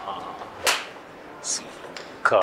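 A golf ball struck by a club on the driving range: one sharp crack about two-thirds of a second in, with a short faint hiss near the end.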